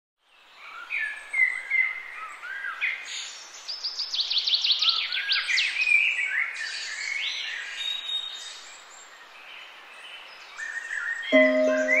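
Several birds singing and chirping over a faint background hiss, with quick runs of falling notes in the middle. Soft sustained music comes in near the end.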